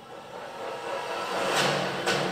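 Movie trailer soundtrack: a rising whoosh that swells steadily louder, with low music tones coming in near the end, as a transition into the studio logo.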